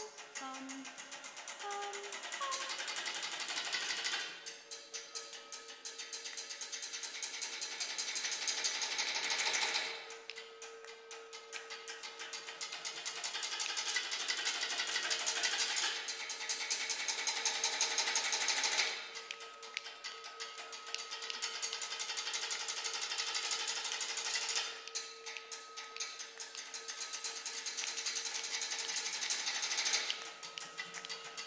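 Contemporary chamber music for marimba and voices played with extended techniques: a dense, rapidly rattling hiss that swells and falls back in waves every few seconds, over a steady held pitch.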